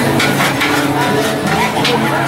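Metal spatula clicking and scraping on a propane flat-top griddle as food is chopped and turned, with a few sharp clicks. Background voices and music run throughout.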